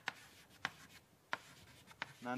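Chalk writing on a blackboard: three short, sharp taps of the chalk against the board, with faint scratching between them.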